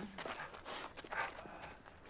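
Soft footsteps and scuffing on a dirt ground, a few short, quiet shuffles.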